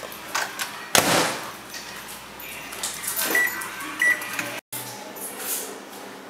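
Microwave oven door shut with a clunk about a second in, followed by two short high beeps from the microwave about half a second apart.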